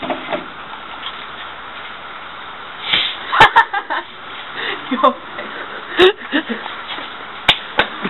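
A shaken plastic bottle of fizzy drink is opened and sprays out over a steady hiss, with a few sharp clicks from about halfway through. Bursts of laughter come with it.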